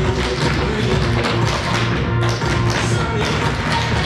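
Tap shoes of a group of dancers striking a wooden stage floor in quick rhythmic taps, over recorded music with a steady bass line.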